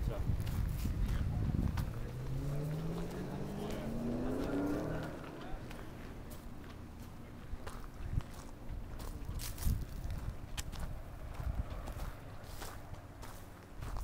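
A vehicle engine whose pitch rises steadily for about four seconds as it accelerates, then drops away. After that come quieter footsteps on dry leaves and gravel, with scattered clicks.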